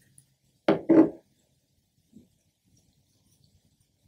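Plastic lid of a portable hydrogen water bottle being twisted off and handled: two short clunks about a second in, then faint handling noises.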